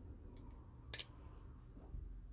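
A single sharp click about a second in, with a fainter tick before it, from folding knives being handled out of frame, over a faint steady room hum.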